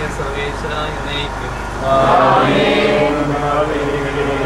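Voices chanting a liturgical prayer, getting louder and more drawn-out about two seconds in, over a steady low hum.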